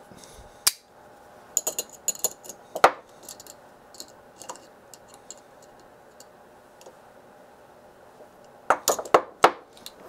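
Sharp metal clicks and clinks of a small SMA torque wrench being worked on a connector and a steel bench vise. There are a few separate clicks, the loudest about three seconds in, and a quick cluster of them near the end.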